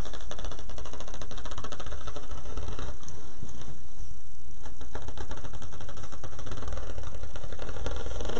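Rotary cutter rolling through plastic deco mesh on a cutting mat: a rapid, continuous run of fine clicks as the blade crosses the mesh strands, over a steady background hum.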